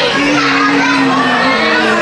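Carousel music with long held notes, under crowd noise and children's shouting voices.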